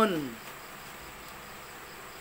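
Faint, steady chirring of insects such as crickets in the background. A man's voice trails off at the very start.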